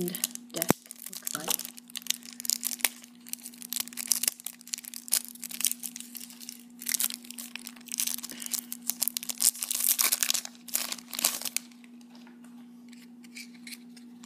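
Thin plastic shrink wrap crinkling and tearing as it is peeled off a stack of trading cards, in irregular bursts for about eleven seconds, then quieter near the end.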